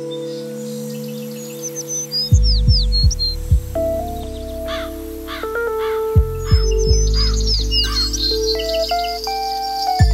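Electronic jingle music: held synth chords with groups of deep falling bass sweeps and quick bird-like chirps over them.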